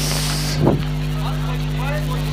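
A steady low hum made of several fixed tones, even in level throughout, with a short hiss at the start and faint voices in the background near the end.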